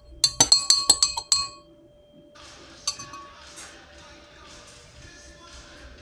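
A rapid run of bright, ringing clinks, like glass or metal being tapped, lasting about a second and a half, then a low murmur of voices with one more clink about three seconds in.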